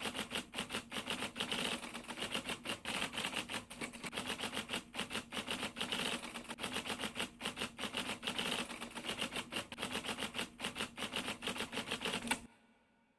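Typewriter keystroke sound effect: a rapid, uneven run of clacking keystrokes.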